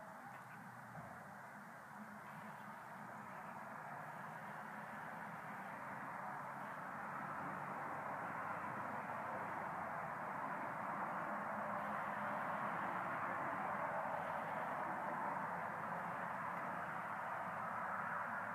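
Steady outdoor background hush with no distinct sounds, slowly growing louder over the span.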